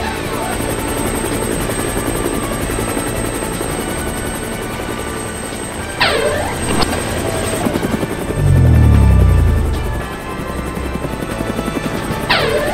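Cartoon helicopter sound effect: steady rotor chop over background music. About six seconds in come two quick falling sweeps, and from about eight to ten seconds a loud deep hum that falls in pitch.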